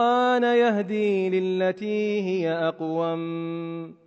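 A man reciting Qur'anic Arabic in melodic chant, with long held notes that glide between pitches, ending on a long sustained note just before the end.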